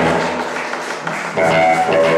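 Live blues band playing: electric guitars, bass guitar and drum kit, with a loud chord struck at the start and again about a second and a half in, ringing on between.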